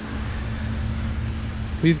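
Low steady rumble with a faint steady hum under it, then a man's voice starts speaking just before the end.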